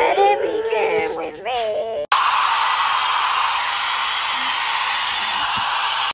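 Computer-synthesized choir voices sing, with clean sliding pitches. About two seconds in they cut off abruptly, and a steady, even rushing noise takes over and holds until it stops at the end.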